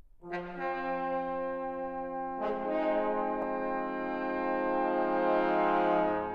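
Brass octet (trumpets, horns, trombones, euphonium, tuba) opening with long held chords built up by layering perfect fifths. Voices enter about a third of a second in, more join around two and a half seconds in, and the chord swells toward the end.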